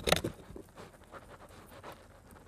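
Pocket knife blade sawing at a plastic glow stick on a concrete paver: a burst of scraping at the start, then faint, irregular scrapes and clicks.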